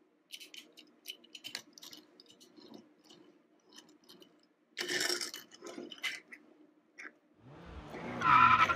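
Faint clicks and ticks of a die-cast toy car being handled in the fingers, then a noisy stretch of about a second, starting about five seconds in, as the small metal car is moved across the tabletop.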